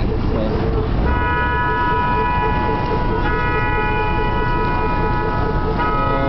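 Road traffic running with a low engine rumble, over which a vehicle horn sounds in long steady blasts: one of about two seconds starting a second in, another of about a second and a half after a short break, and a third beginning at the end.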